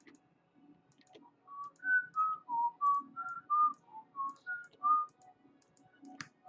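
A person whistling a short tune of about a dozen notes, starting about a second and a half in. Light computer mouse and keyboard clicks run underneath.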